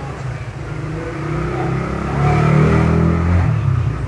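A motor vehicle engine going by, getting louder about two seconds in and dropping off shortly before the end.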